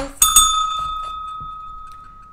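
A small bell struck twice in quick succession, then ringing on in one clear tone that slowly dies away.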